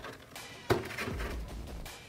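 Clear plastic blister tray clicking and crackling as an action figure is pulled free of it, with one sharper click a little under a second in. Faint background music underneath.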